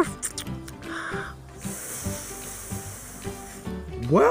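Background music with a blowing hiss sound effect of a bubblegum bubble being blown up. A short puff comes about a second in, then a steady hiss lasts about two seconds and stops just before the end.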